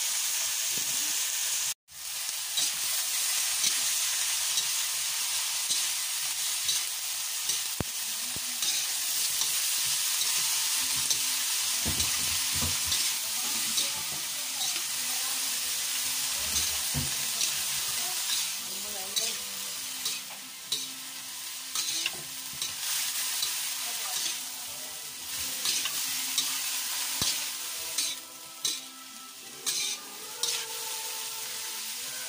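Shredded palm heart sizzling in hot oil in a wok while it is stirred and tossed with a spatula, the spatula clicking and scraping against the pan. The sound breaks off for an instant about two seconds in, and the scraping grows more uneven near the end.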